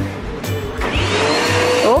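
Upright bagless vacuum cleaner starting up about a second in, its motor whine rising as it gets up to speed and running loud.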